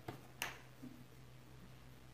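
Near silence with a faint steady room hum, broken by one short sharp click about half a second in.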